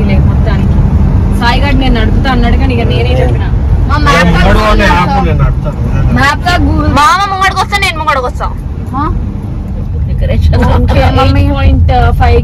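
Steady low road and engine rumble inside a moving MG car's cabin, with voices talking over it.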